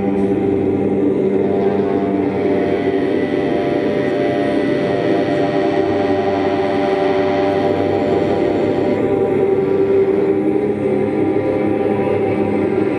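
Live drone music: a man's chanting voice, processed through effects, held over a dense, unbroken drone of sustained tones.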